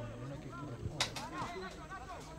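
Faint sound of a football match on a grass pitch: distant players' voices calling, with a single sharp knock about a second in.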